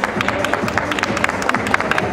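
Background music with scattered audience clapping, many sharp claps a second, over crowd noise.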